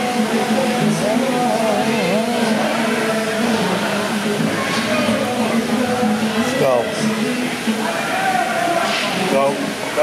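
Overlapping voices of rink spectators talking and calling out over a steady low hum, echoing in a large indoor hall.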